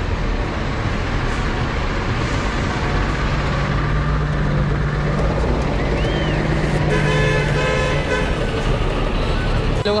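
Diesel engines of a bus and a lorry passing close alongside make a steady, loud engine rumble with a low drone. A brief higher-pitched tone is heard around seven seconds in.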